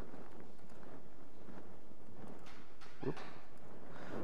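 A few scattered light taps on a laptop keyboard over a steady room hum, with a short "oops" about three seconds in.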